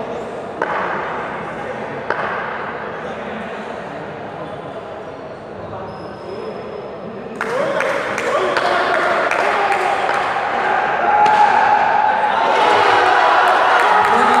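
Players' and onlookers' voices echoing in a large indoor sports hall, with two sharp knocks in the first couple of seconds. The shouting gets louder about seven seconds in and again near the end.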